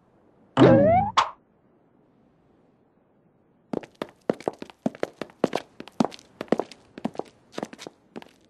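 Cartoon sound effects: a short, loud boing whose pitch bends, about half a second in, then from about four seconds a quick, irregular run of sharp knocks, about four a second.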